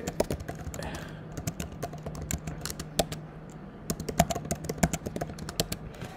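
Typing on a computer keyboard: a run of irregular keystroke clicks, over a faint steady low hum.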